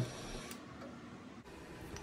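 Quiet pause: faint, steady room noise with no distinct sound.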